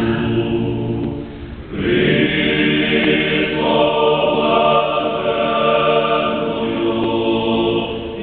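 Seminary choir singing unaccompanied Byzantine Catholic sacred chant, sustained chords with a brief pause between phrases about a second and a half in, then a fuller phrase.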